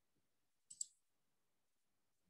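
A computer mouse clicking, two sharp clicks in quick succession a little under a second in; otherwise near silence.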